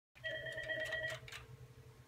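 Electronic desk phone ringing: one steady beep lasting about a second, with a few light clicks alongside.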